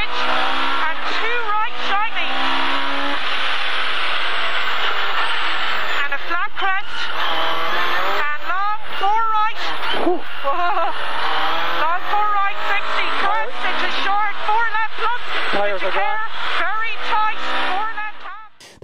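Rally car engine heard from inside the cockpit, revving hard at full throttle along a stage. The pitch climbs and drops again and again as the driver changes gear.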